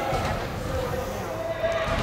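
Indistinct voices with no clear words, mixed with a wavering pitched sound.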